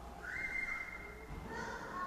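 A faint, thin, high-pitched whistle-like squeal that glides up briefly and then holds one steady pitch for about a second and a half before fading.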